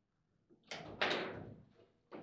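Hard knocks on a table football table during play, as the ball and the rods strike its wood and metal: two sharp hits about a third of a second apart, the second louder and ringing briefly through the table.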